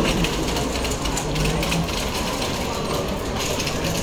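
Electric motor of a stand-on airport tow tractor whirring close by, over the steady murmur of a busy terminal crowd.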